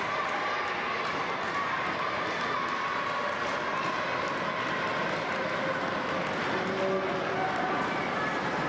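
Scattered voices and shouts of a small crowd in a large gymnasium, over a steady background din.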